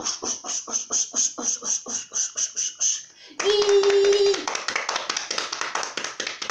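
A storyteller's quick rhythmic sound effects for hurrying through a wheat field: short swishing beats at about five a second. About three and a half seconds in they break for a held voiced 'ooh' lasting about a second, then the quick beats start again.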